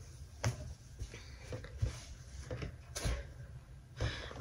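Quiet handling sounds: a stitched piece of cross-stitch fabric rustling as it is lowered and put away, with a few brief soft knocks.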